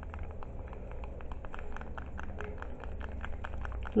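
A stick stirring thick aloe vera gel cream in a small glass jar, tapping and scraping against the glass in a quick, uneven run of clicks, several a second.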